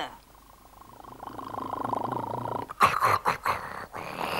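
A small tractor engine puttering in a fast, even beat and growing louder as it drives off with its trailer. It is followed near the end by a second of short, voice-like sounds.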